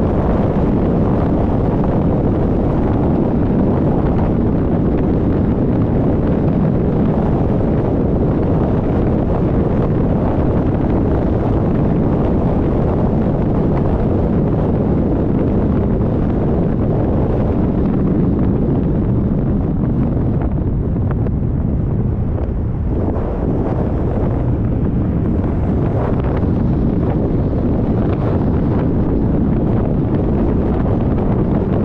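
Steady, loud wind buffeting a moving camera's microphone, a low rushing roar that drowns out other sound.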